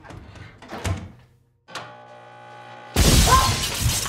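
A countertop microwave oven starts and runs with a steady hum. About three seconds in, a sudden loud crash and burst of noise as the aluminium foil tray inside sparks and the oven bursts into flames.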